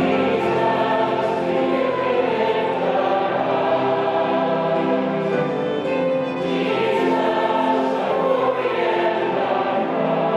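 A congregation singing a slow hymn together, accompanied by violin, flute and piano.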